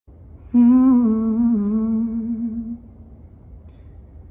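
A young man humming one long held note, unaccompanied, starting about half a second in and stepping slightly down in pitch before fading out after about two seconds; faint room noise follows.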